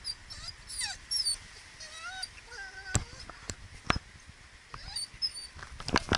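A dog whining in a series of short, pitched whimpers that slide up and down. A couple of sharp clicks come about halfway through.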